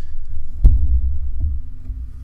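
Handling noise from a cheap boom-arm mic stand being moved with a Blue Snowball microphone on it, picked up by that microphone: a loud low rumble with a sharp knock about two-thirds of a second in and a smaller knock later.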